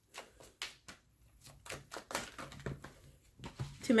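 Tarot deck shuffled by hand: a quiet, irregular run of short card clicks and rustles.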